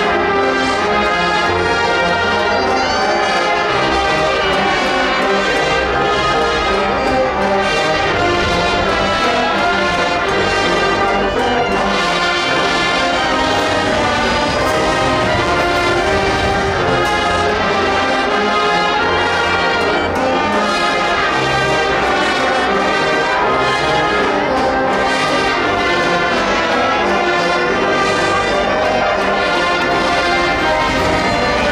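A massed Oaxacan wind band of hundreds of clarinets, saxophones, brass and sousaphones playing live together, loud and unbroken.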